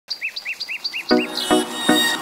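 Five quick bird-like chirps, about four a second. About a second in, music starts with short, punchy notes.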